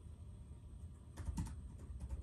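Quiet typing on a keyboard: a few sharp key clicks grouped a little past a second in, over a low steady hum.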